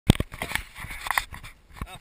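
Knocks and rustles from a handheld camera being moved, sharpest right at the start. A short shouted word begins near the end.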